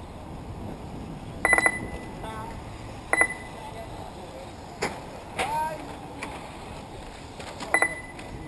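Short electronic beeps, four in the space of a few seconds at uneven spacing, over a steady background hiss. They fit a race timing system beeping as RC cars cross the lap-counting line.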